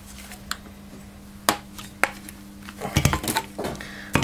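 Hard plastic clicks and knocks as a vacuum hose handle fitting is pressed at its locking lugs and popped off the hose: a sharp click about one and a half seconds in and a quick cluster of clicks near the end.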